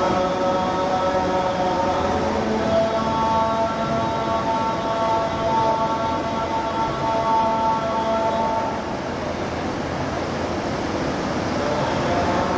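A voice holding a long, steady chanted note that steps to a new pitch about two and a half seconds in and stops about nine seconds in.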